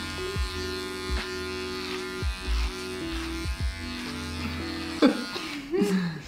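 Cordless electric beard trimmer buzzing steadily as it is run through a man's hair during a haircut, its tone stepping slightly a few times.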